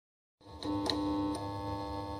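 Electronic intro music: a held synthesizer chord, entering about half a second in, with a few light ticks over it.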